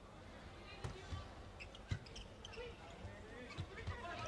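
Faint indoor arena sound with distant voices, and a few short sharp slaps of a volleyball being struck, the clearest about two seconds in, as a serve is hit and played.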